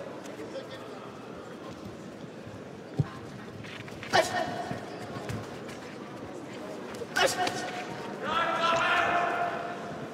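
Sounds of a boxing bout in a large hall: a single sharp thud about three seconds in, short shouted calls from around the ring about four and seven seconds in, and a longer call near the end.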